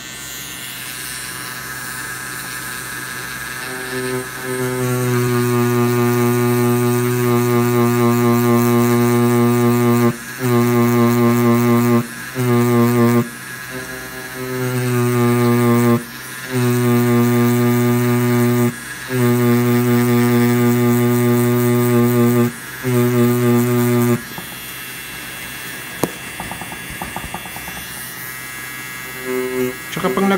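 Tattoo machine buzzing while packing color into practice skin: a steady low buzz that starts about four seconds in, breaks off briefly several times as the machine is stopped and restarted, and stops for good about six seconds before the end.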